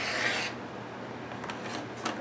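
Rotary cutter rolling through fabric on a cutting mat along the edge of an acrylic ruler: one short rasping cut lasting about half a second.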